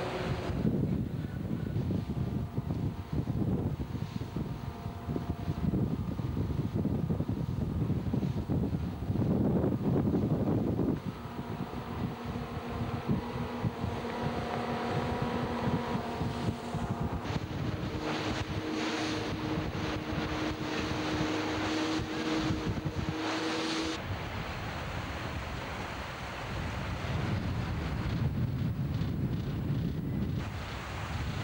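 Motorboat running at speed, heard from on board: wind buffeting the microphone and water rushing past the hull, over the steady drone of twin 4.3-litre V6 petrol engines. The engine note comes through more clearly in the middle stretch.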